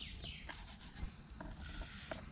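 Faint rubbing and a few light clicks of plastic tubs and lids being handled, as fine, dry, sieved breadcrumb is poured from a plastic box into a small bait tub.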